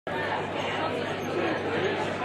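Indistinct chatter of many people talking at once, a steady murmur of overlapping voices in a large banquet hall.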